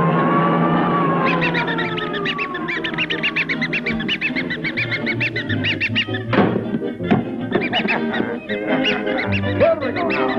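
Cartoon soundtrack music with sound effects: a long, slowly falling glide, then a quick run of high squeaky honks at about five a second, and a sharp crash a little after six seconds in.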